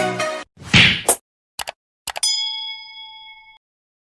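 Intro music stops about half a second in, followed by a short whoosh, a few click sound effects and a bright bell-like ding that rings for over a second and fades away.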